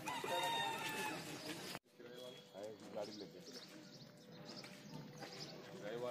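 A rooster crowing once, a single drawn-out call of about a second that falls slightly in pitch, over background voices. The sound cuts out abruptly a little under two seconds in, leaving faint voices.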